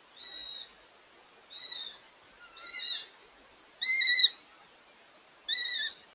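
Goshawk calling five times, a high, slightly falling call about half a second long, repeated every second or so; the fourth call is the loudest.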